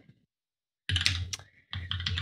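Computer keyboard typing: a short run of keystrokes starting about a second in, after a moment of dead silence, and a few more keystrokes near the end.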